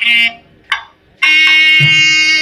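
Nadaswaram, the South Indian double-reed pipe, playing: a short bright note, then a sharp drum stroke, then a long held note from just past a second in. Thavil drum strokes come in under it near the end.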